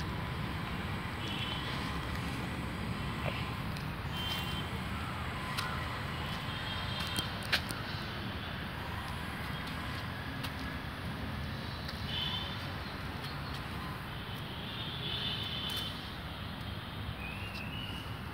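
Outdoor background noise: a steady low rumble, with a few short faint high chirps scattered through and a couple of sharp clicks, the loudest a little past halfway.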